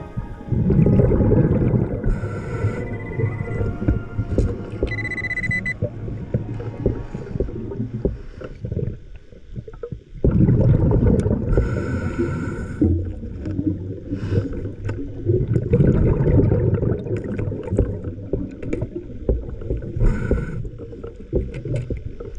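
Muffled underwater rumble and bubbling from a diver moving in murky water, heard on an underwater camera. It is loud and uneven, with a short lull about nine to ten seconds in.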